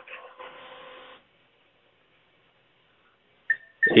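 Faint telephone-line hiss that cuts off about a second in, leaving dead silence. Near the end there is a brief click and a short high beep on the line.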